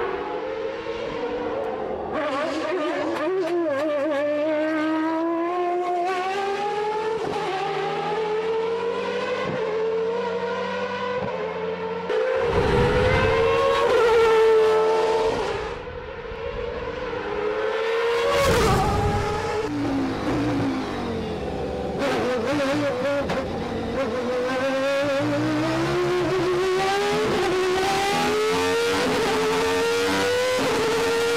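The Renault Espace F1's Renault RS5 Formula 1 V10 engine at full acceleration, its pitch climbing through the revs and falling back at each upshift, again and again. A loud rushing sweep a little before halfway, and another shorter one later, as the car passes close by.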